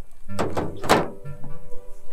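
Two dull thuds about half a second apart, with soft background music underneath.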